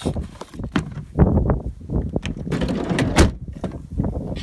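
Handling noise in the back of a van: hands rubbing over floor mats and carpet, with scattered rustles and knocks and a sharper knock about three seconds in.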